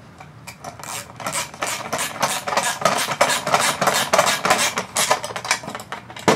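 Socket ratchet with a 10 mm socket clicking rapidly as it runs a nylon lock nut down a license plate screw.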